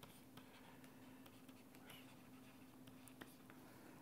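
Faint scratching and light ticks of a stylus writing on a pen tablet, over a low steady hum.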